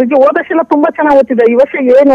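Speech only: a woman talking without pause.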